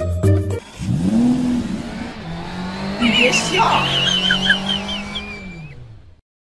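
A car engine revving with tyre squeal, a racing-car sound effect dubbed over the rolling tyre. The engine note rises and falls about a second in, high squealing comes in near the middle, and the sound fades out near the end.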